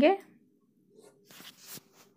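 Faint rustling of cloth as lightweight printed fabric is handled and shifted on the sewing table, a few soft irregular rustles about a second in.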